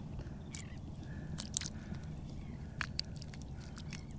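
A hand reaching into ankle-deep water over a shell-strewn bottom: light water disturbance with a few faint sharp clicks, mostly in the first three seconds, over a low steady rumble.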